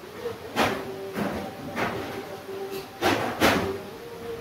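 Paintbrush strokes on a wall: five short swishes, three evenly spaced about half a second apart, then two close together near the end.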